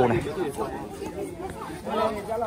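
Several people talking at once in overlapping chatter, with one louder spoken word at the start.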